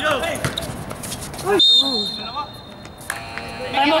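Players shouting on a basketball court, a referee's whistle blowing about one and a half seconds in, then an electric game buzzer sounding steadily near the end as a timeout is called.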